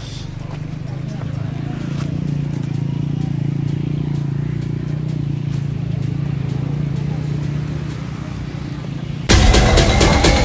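A steady low hum with faint ticks over it, then loud electronic dance music with a beat cuts in suddenly near the end.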